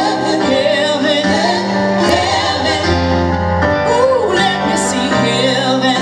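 Live band music: a woman sings lead over keyboard and guitar, with backing singers joining in.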